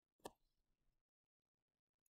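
Near silence: room tone, with one faint click about a quarter of a second in.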